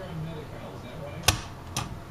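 A plug spinner snapping the picked plug of a Schlage deadbolt around in its cylinder: one sharp metallic click, then a second fainter click about half a second later.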